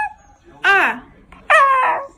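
Shiba Inu giving two short, speech-like whining calls. The first, about half a second in, rises and falls in pitch; the second, about a second later and longer, glides downward.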